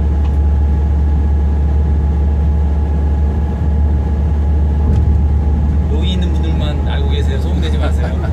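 Steady low rumble inside the driver's cab of an SRT high-speed train (KTX-Sancheon type) running on the line, with a faint steady hum of a few fixed tones over it.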